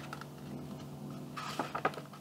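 Sheet of thin card being handled and folded in half: faint clicks and crinkles, with a cluster of sharper ones in the last half-second, over a steady low hum.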